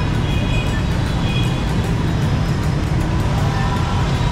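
Steady low rumble of busy road traffic, with faint high tones in the first second and a half.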